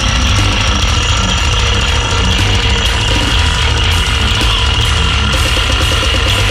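Goregrind played at full tilt: heavily distorted guitars and bass under fast, dense drumming, loud and unbroken.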